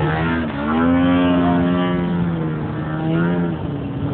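Engine of a 2.5 m radio-controlled Extra 330S aerobatic model plane in flight, a steady buzzing note. Its pitch dips briefly early on, rises and holds at its loudest, then falls near the end.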